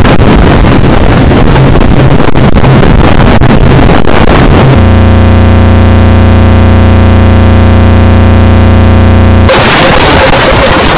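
Deliberately overdriven, clipped audio at full loudness: harsh distorted noise that, about five seconds in, switches to a steady buzzing drone with many overtones, then breaks back into distorted noise near the end.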